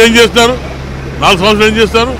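A man speaking into a handheld microphone, with a steady low hum under his voice throughout.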